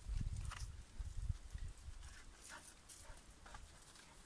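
A dog rummaging under a building: faint short rustles and scuffs among straw and wood. Low rumbling on the microphone through the first second and a half.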